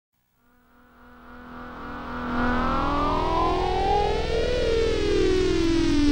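Synthesizer sweep opening an electronic track: it swells up from silence, its many pitches gliding upward and then turning back down about two-thirds of the way in, over a steady low drone.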